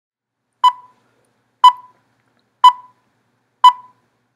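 Film-leader countdown beeps: four short beeps of the same pitch, one each second, each starting sharply and fading quickly.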